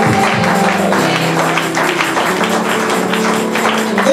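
Live up-tempo Pentecostal praise music with no singing: held keyboard chords under a tambourine and percussion beating a fast, steady rhythm.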